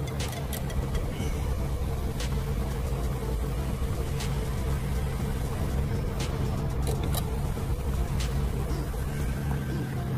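Steady low hum inside a car's cabin, with a few faint light clicks.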